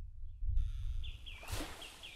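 Logo sound effect: a low rumbling whoosh that fades out, and under it from about half a second in a soft nature hiss with a few short bird chirps and a quick swish about a second and a half in.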